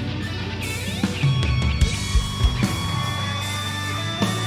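Live rock recording played back: an electric guitar lead with long held notes and a rising bend about a second in, over bass and drums.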